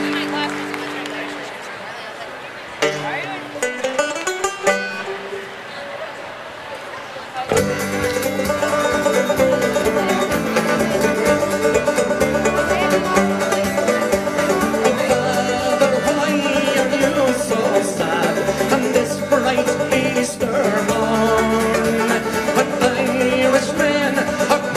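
Irish folk band with banjo and acoustic guitars playing a ballad's instrumental introduction; a few held notes and scattered sounds open it, and the full band comes in together about seven seconds in and plays on steadily.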